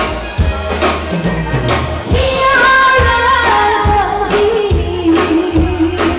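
Live band playing a pop song with a steady drum beat and bass; a woman's singing voice comes in about two seconds in and holds long notes.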